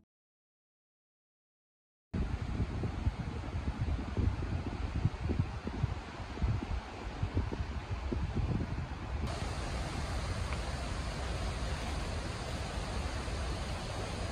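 Silence for about two seconds, then outdoor wind buffeting the microphone in uneven gusts over a steady rushing hiss. A little past halfway the gusting eases and the hiss turns steadier and brighter.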